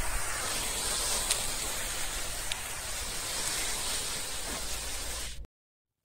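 Steady, even hiss of outdoor background noise picked up by the camera's microphone, with a couple of faint ticks. It cuts off abruptly to silence shortly before the end.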